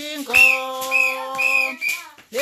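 Small plastic whistle blown in four short blasts, about two a second, over a voice holding one long sung note.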